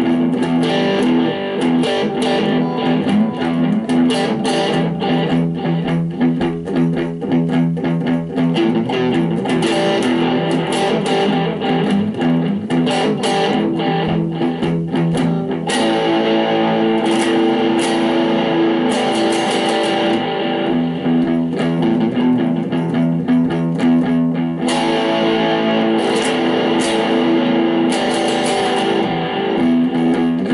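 Electric guitar, a Stratocaster-style solid body, playing a blues, with notes picked and strummed in a steady run.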